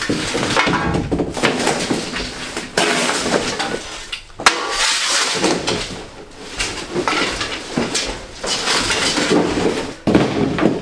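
Demolition debris, broken drywall, wood and metal scraps, clattering and scraping as it is shovelled and tossed into a plastic sled, with continual irregular knocks and crashes.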